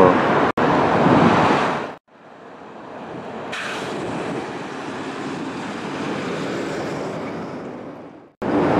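Outdoor ambience: a steady rushing noise of wind on the microphone and traffic. It cuts off suddenly about two seconds in, then fades back in more quietly.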